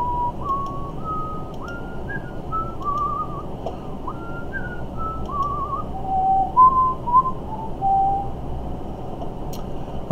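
A man whistling a wandering tune: a run of held notes stepping up and then down, with a couple of quick warbling trills in the middle, trailing off about eight seconds in.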